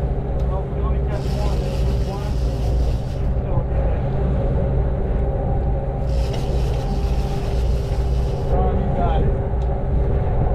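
Sportfishing boat's inboard engines running steadily under way: a loud, even low drone with a steady higher whine over it.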